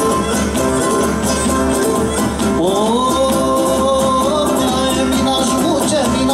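Live Cretan soústa dance music from a folk band: laouto strumming with drums under a lyra melody. About halfway through a long note slides up and is held for a couple of seconds.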